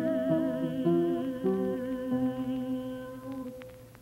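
Voices singing long held notes with vibrato over a few steadier changing notes, the close of a choral piece. The chord fades away in the last second.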